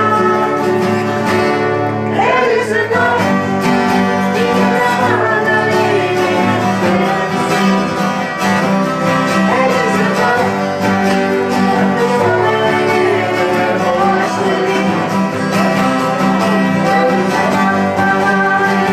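Acoustic guitar strummed, with voices singing along to an oldies song played live.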